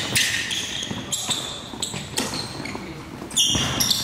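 Basketball bouncing on a hardwood gym floor during a pickup game, with short high-pitched sneaker squeaks in between.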